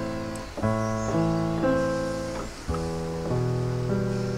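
Piano playing slow left-hand arpeggios, three low notes at a time, pinky, pointer finger then thumb, each note ringing on as the next is added. A second group of three begins about two and a half seconds in.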